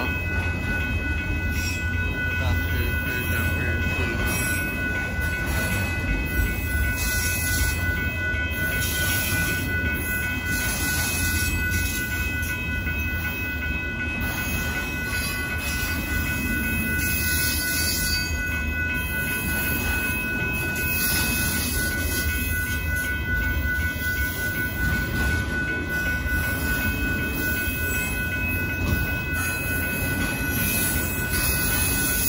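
Freight train of autorack cars rolling past at a grade crossing, a steady rumble of wheels on rail. Several steady high-pitched tones ring above it the whole time.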